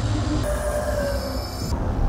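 Steady rumbling roar of a vertical wind tunnel's airflow.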